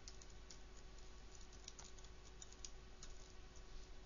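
Computer keyboard typing, faint: irregular key clicks at an uneven pace over a faint steady hum.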